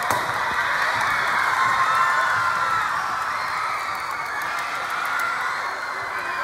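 A large crowd of middle-school students cheering, shrieking and clapping together in one continuous din.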